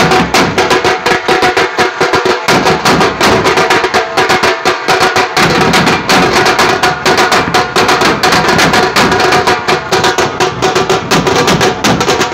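A street band of shoulder-slung side drums and a large bass drum, beaten with sticks, drumming fast, dense and loud without a break.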